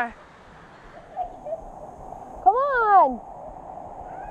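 Steady rush of river water, with one loud, high cry that rises and falls about two and a half seconds in.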